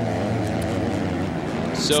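Engines of 250cc four-stroke motocross bikes racing on the track, their revs rising and falling. A commentator starts speaking near the end.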